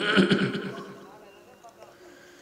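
A man's melodic Quran recitation through a loudspeaker system ends its phrase on a short wavering note. The note and its loudspeaker echo die away within about a second, leaving a low background hum.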